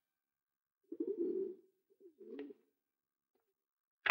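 Doves cooing faintly: two soft, wavering coos, the first about a second in and a shorter one about a second later.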